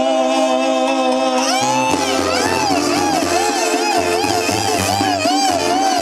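Live Mexican banda (brass band) music: a held chord for about a second and a half, then the tuba comes in underneath and the band plays a melody with a wide, regular vibrato.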